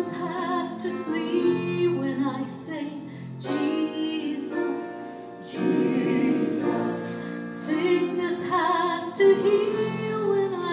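A choir singing, several voices together in sustained phrases, with brief dips between phrases.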